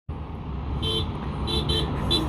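Double-decker bus horn beeping three short times, one and then a quick pair, as a friendly 'beep beep' to a bystander. The beeps sound over the low rumble of the approaching bus.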